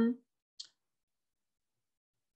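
A man's voice trailing off at the end of a word, then a single short faint click about half a second in, then dead silence.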